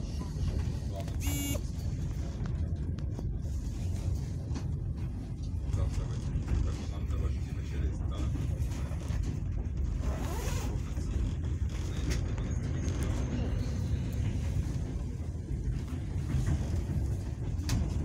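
Steady low rumble of a moving passenger train heard from inside the carriage, with wheels running on the rails and occasional faint clicks and creaks.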